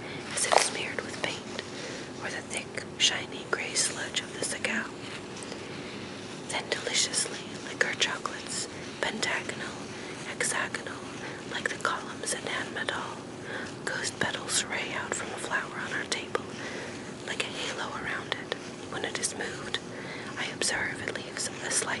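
Whispered reading aloud, full of sharp hissing 's' sounds, over a faint steady hum.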